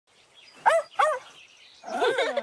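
A cartoon dog barking twice, two short high barks about half a second apart.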